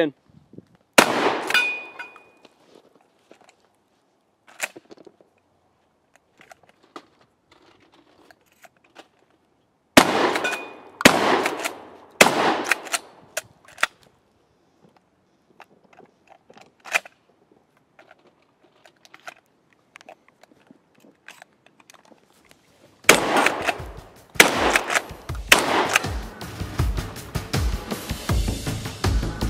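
Shotgun fired on a range drill: one shot about a second in, then three shots about a second apart around the middle, with quieter clicks between them. Electronic music comes in near the end.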